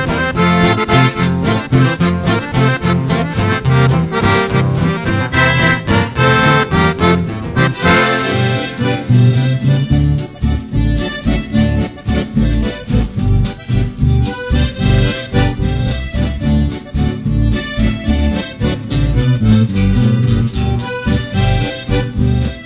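Instrumental Argentine campero waltz (valseado) played on accordion with guitar accompaniment.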